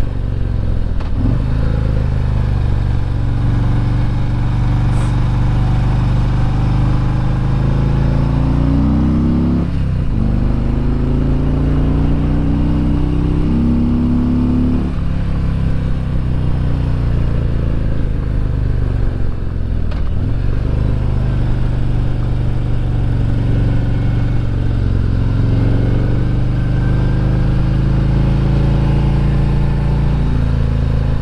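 Harley-Davidson Road Glide's V-twin engine running under way on the road, heard from the rider's seat. Its pitch climbs and drops several times, with sharp dips about ten, fifteen and twenty seconds in.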